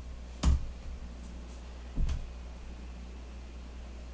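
Two sharp key taps on a computer keyboard, about a second and a half apart, the first louder with a low thud: keystrokes that send the typed "cargo run" command to compile and run the Rust program.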